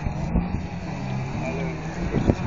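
Engine of an off-road 4x4 competition truck running on the course, a steady low drone, with spectators' voices mixed in.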